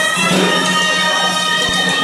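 Traditional folk music: reed pipes playing a melody over a steady low drone.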